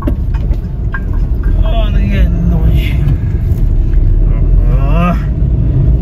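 Steady low rumble of road and wind noise from a moving vehicle driving through traffic, with short snatches of a voice over it.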